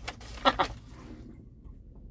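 A man chewing a mouthful of meatball sub, with one short sound from the mouth about half a second in, then faint chewing.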